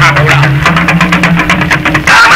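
Traditional Hausa music played on small hand drums: rapid, even drum strokes under a low held tone that steps up in pitch about half a second in.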